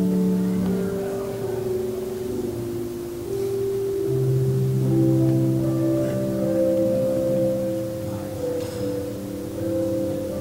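Slow instrumental music of long, overlapping held notes, with chords changing every few seconds.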